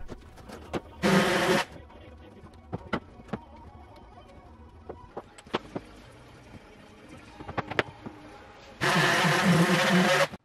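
Random orbital sander running in two short bursts, briefly about a second in and for about a second and a half near the end, with scattered clicks and knocks of wood and hand tools being handled between.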